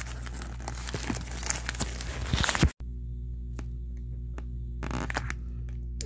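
Crinkling and rustling of crumpled tissue packing paper as a mini backpack is handled and opened. The rustling stops abruptly a little under three seconds in, leaving a low steady hum with a few faint clicks and a brief rustle near the end.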